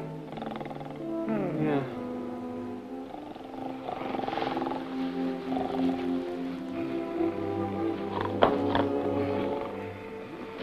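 A man snoring in his sleep, rough rattling breaths over a background orchestral film score.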